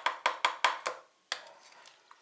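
Metal spoon clinking against the side of a glass bowl while stirring yogurt: quick clinks about five a second for the first second, then one more a little later.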